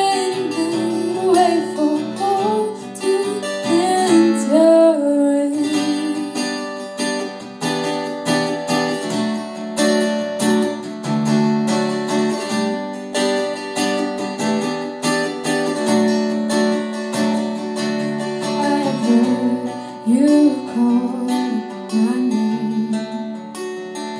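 Acoustic guitar played live, with a woman's voice singing long, gliding wordless lines over it for the first few seconds and again near the end; the guitar carries on alone in between.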